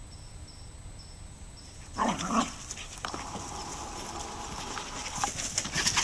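Connemara terriers playing: after a quiet start, one gives a short, loud vocalisation about two seconds in, followed by a thinner, steadier dog sound for a couple of seconds and scuffling near the end.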